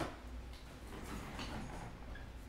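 A faint sharp click, then soft rustling and handling noise, over a steady low hum.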